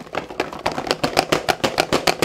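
Cardboard subscription box handled close to the microphone as its lid is opened: a fast run of clicks and scrapes, about nine a second.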